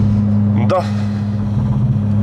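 Volkswagen Golf 5 GTI's 2.0 turbo four-cylinder engine droning steadily at highway cruise, heard inside the cabin together with road noise.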